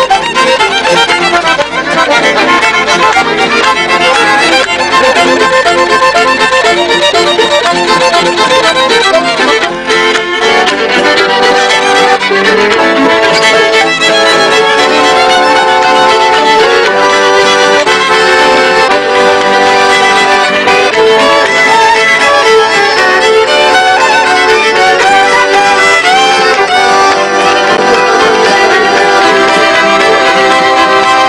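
Several fiddles playing a Swedish folk tune together.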